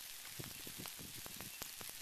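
Crackling of a Kilauea pahoehoe lava flow: its cooling glassy crust cracks and ticks as the molten lobe pushes it along. The sound is a faint, irregular scatter of small clicks over a steady hiss.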